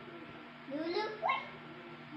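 A young child's brief wordless whine, sliding up in pitch twice in quick succession about a second in.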